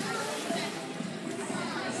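Steady water noise from a group of swimmers sculling and moving in an echoing indoor pool, with faint voices in the background.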